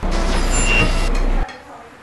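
Loud vehicle rumble with a hiss, cut in abruptly and cutting off about a second and a half in, with a brief high whine in the middle.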